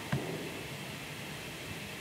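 Steady low hiss of background noise on the recording, with one faint click just after the start.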